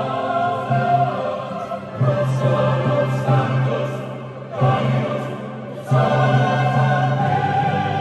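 Mixed choir of men and women singing a sacred piece in held phrases, with fresh entries about two, four and a half and six seconds in, ringing in a large church.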